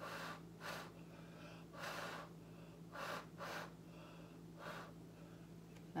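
Short puffs of breath blown by mouth onto wet acrylic pour paint to push it out across the canvas, about six puffs, unevenly spaced, over a steady low hum.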